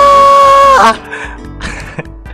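A very loud single held note, its pitch dead steady, that slides down and cuts off a little under a second in. Softer background music with a beat plays underneath throughout.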